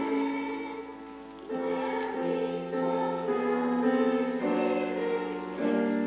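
Children's choir singing in long held notes. There is a short break between phrases about a second in.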